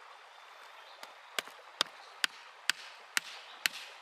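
Hammer striking a steel chisel held on a geode to split it down the middle: a steady run of sharp metal clinks, about two a second, starting about a second in.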